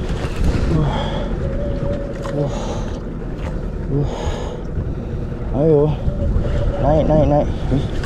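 A man groaning under strain twice in the second half while fighting a strong hooked fish on a bent rod, over a steady low rumble of wind on the microphone and sea.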